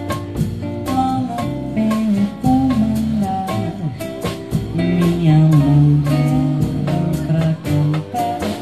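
A live jazz/bossa nova band plays an instrumental passage with no singing: guitar over a moving bass line, with steady drum and percussion strokes.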